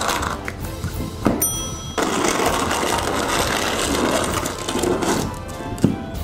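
Background music over the rasping scrape of a plastic snow shovel being pushed through snow along the pavement.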